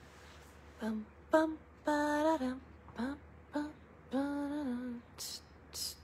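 A woman humming a wordless tune to herself: several short notes and two longer held ones, ending in a brief laugh.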